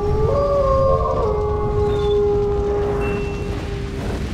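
Wolf howl sound effect: one long howl that rises at the start and then holds a steady pitch for about three seconds, fading near the end, over a low rumble.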